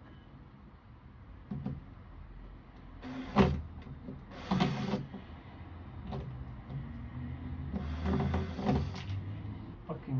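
Cordless drill driving a screw into a bracket on a plywood box, its motor running in three short runs, the last one the longest.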